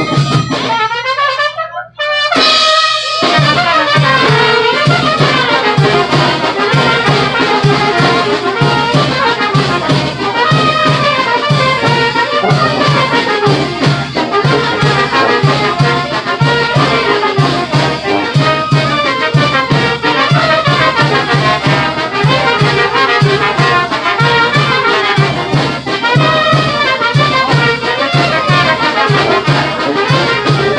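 Mexican banda brass band playing, with trumpets and trombones over a steady bass beat. The music drops out briefly about two seconds in, then starts again.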